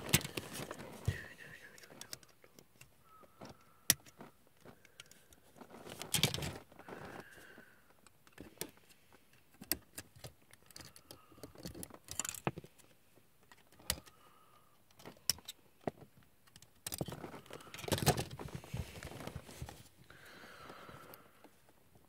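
Small hard-plastic model-kit parts handled and pressed together by hand: scattered light clicks and short clatters as pieces snap into place.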